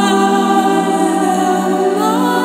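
A woman singing long, held notes in a slow meditative chant, blended with several other held vocal tones that give a choir-like sound.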